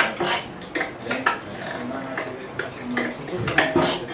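Hand tools and metal parts clinking and clattering as they are handled, a quick run of sharp metallic knocks with short ringing after some, loudest near the start and again near the end.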